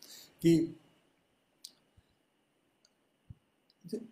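One short spoken word, then a pause of about three seconds with a few faint, isolated clicks and soft taps.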